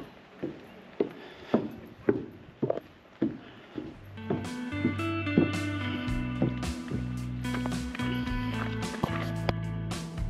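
Footsteps on a path, about two a second. About four seconds in, guitar music comes in and carries on.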